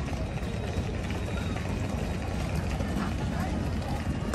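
Busy pedestrian street ambience: indistinct voices of passers-by over a steady low rumble.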